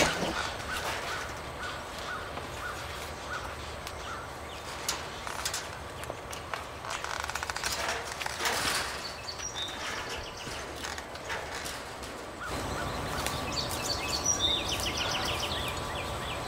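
Small garden birds chirping and singing, with a rapid trill near the end, over a low outdoor background and a few brief knocks.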